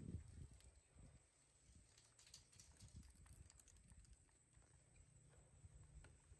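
Near silence: faint low rumble with a few soft, scattered clicks.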